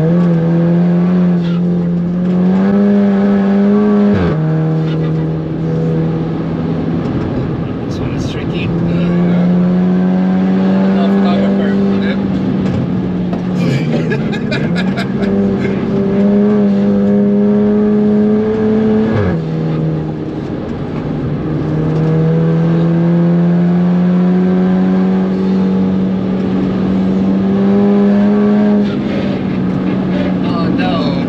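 Audi S3 2.0 TFSI turbocharged four-cylinder engine in a modified VW Caddy, heard from inside the cabin, pulling at high revs under full load. Its pitch climbs steadily and falls sharply at upshifts about four seconds in and again about nineteen seconds in.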